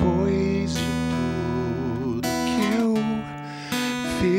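Acoustic guitar strummed in a slow ballad, with a man singing a wavering melody line over the chords. A handful of strums ring out, with the sound dipping briefly about three seconds in.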